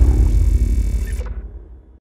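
Fading tail of an outro music-and-effects sting. A deep bass boom dies away over the two seconds, and the higher sounds cut off partway through.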